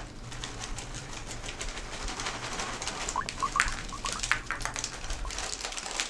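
Cereal rings pouring from a plastic container into a clay bowl: a dense run of small clicks and patters. A few short, high chirping squeaks come about halfway through.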